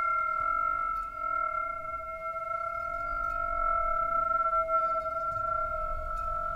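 Steady ringing musical drone of a few held tones, the middle one the loudest, barely changing, over a faint low rumble.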